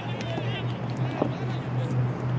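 Pitch-side ambience of a football match: a steady low hum with players' faint shouts from the field.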